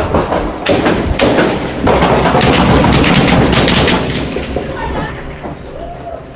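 Gunfire in a shootout: a rapid, irregular series of shots, about ten, over the first four seconds against a constant heavy noise, which then eases off.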